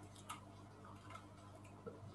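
Near-silent room tone with a faint low hum and a couple of faint computer mouse clicks about a quarter of a second in.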